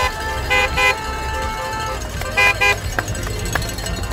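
Car horns in the race convoy tooting in short beeps: one at the start, then two quick double toots about two seconds apart, over a low steady rumble.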